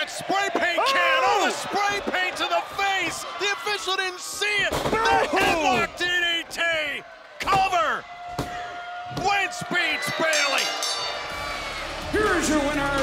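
Heavy thuds of wrestlers' bodies hitting the ring mat, several times, amid loud excited shouting voices.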